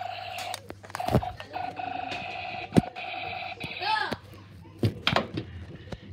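A child's voice holding a long, steady, slightly wavering buzzing note for about four seconds, like a play alarm noise. It is broken by a few sharp knocks of cardboard being hit.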